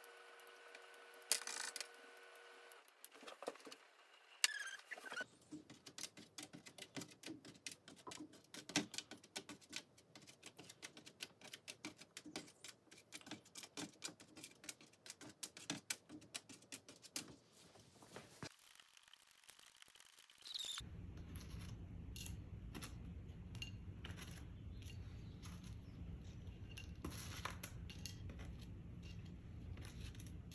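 Faint, rapid clicking and light tapping of thin potato slices on a metal baking sheet. A steady low hum starts suddenly about two-thirds of the way through.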